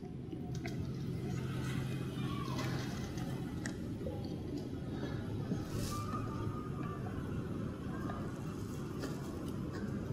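Steady low background rumble with a faint hum, and a few faint clicks and rustles as a camera is fitted onto a handheld gimbal.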